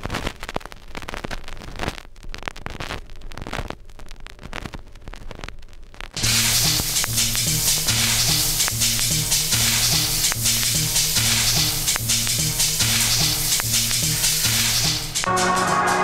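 Gramophone record crackling and clicking as it plays. About six seconds in, a loud, even rush of shower water sets in over a repeating bass line.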